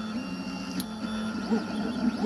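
A 3D printer running a print: its stepper motors give short steady tones that jump to a new pitch with each move. There is one sharp click about a second in.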